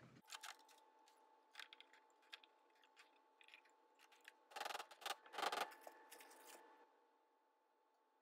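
Plastic splash pan and masonite bat being fitted onto a Shimpo Aspire tabletop potter's wheel: light scattered clicks and taps, with a few louder knocks about halfway through as the parts seat into place.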